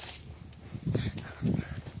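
Soft low thumps and rustling from a handheld phone carried by someone moving quickly, two main bumps about half a second apart.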